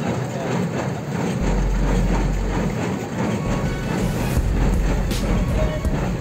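Tractor-drawn square baler running while baling rice straw: a steady engine drone with repeated mechanical knocks from the baling mechanism. Background music plays underneath.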